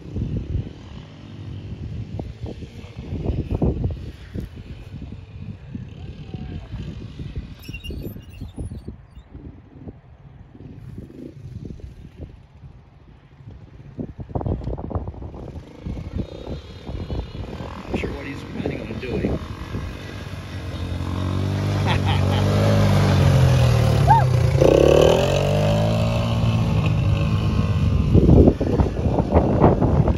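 Youth ATV's small engine running, getting much louder in the second half as the quad comes close and passes, its pitch rising and falling with the throttle. Wind buffets the microphone in the first half.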